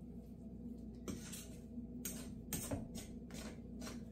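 A metal fork stirring a wet, shaggy pizza dough in a mixing bowl: a string of soft, irregular scrapes and taps of the fork against the bowl, over a faint steady hum.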